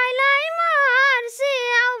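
A boy singing a Nepali dohori folk song unaccompanied, holding long wavering notes, with a quick breath about halfway through.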